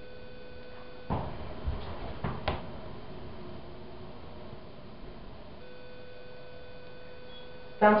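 Telescoping holeless hydraulic elevator car on the move: a steady hum of several tones, broken about a second in by a loud knock and a few more clunks as the car jolts and bounces, after which the hum returns.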